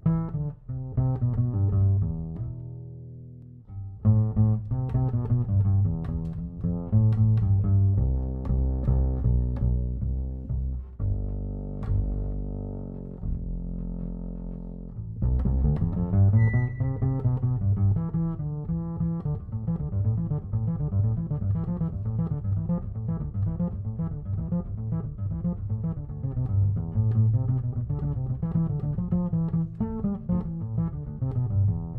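Acoustic upright double bass played pizzicato: plucked low notes with short pauses and some held notes, settling from about fifteen seconds in into a steady, unbroken figure.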